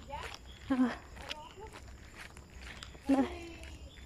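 Women talking in Tagalog as they walk, with a loud spoken word about a second in and again near the end, and soft footsteps on a concrete path between the words.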